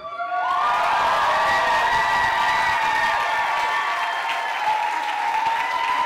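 Audience applauding and cheering, with long held whoops over the clapping, right after the dance music stops.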